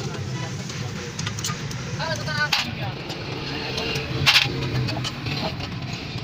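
Hand tools on a car's front suspension: scattered clicks and a sharp knock about four seconds in, over a steady low hum, with brief indistinct voices.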